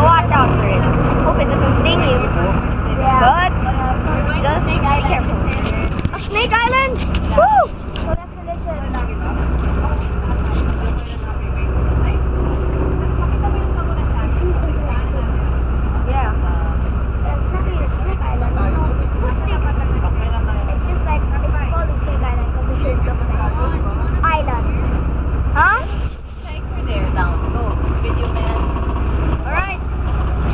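Tour boat's engine running with a steady low drone, with passengers' voices over it in the first several seconds and again near the end.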